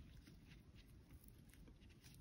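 Near silence: room tone, with a few faint soft ticks from fingers handling and knotting crochet thread.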